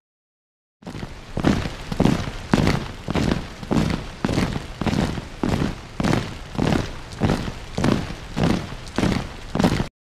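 Outro sound effect: after a moment of silence, a steady run of heavy, booming hits, a little under two a second, cut off just before the end.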